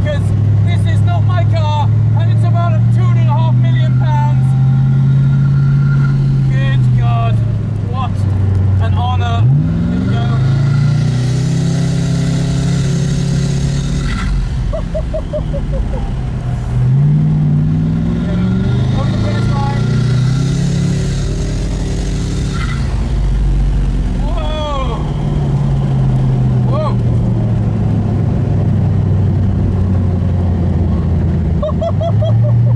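Koenigsegg Regera's twin-turbo V8 heard from the open cockpit under hard acceleration. Its pitch climbs steeply twice, about a third of the way in and again past the middle, rising smoothly with no gear changes from its single-gear direct drive, then easing back. A rushing hiss of air at speed follows each rise.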